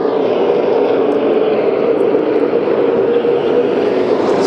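A field of super late model stock cars racing around the oval, their V8 engines making one steady, continuous drone.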